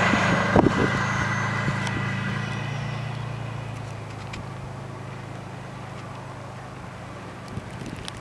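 2004 Subaru WRX STI's turbocharged flat-four engine running, loud at first and then fading steadily as the car drives away across the snow. A couple of short knocks come about half a second in.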